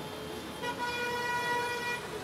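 A car horn sounding once, a steady single note held for over a second, starting about half a second in, over the noise of passing traffic on a wet road.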